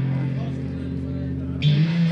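Electric guitar played through a Marshall amplifier: a low chord held and ringing, then a new, higher chord struck about one and a half seconds in.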